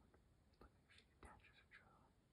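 Near silence, with faint whispering from about halfway through.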